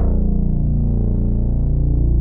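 Distorted synth bass from an Arturia Mini V3 software Minimoog, holding one low note whose bright attack fades while the low body sustains.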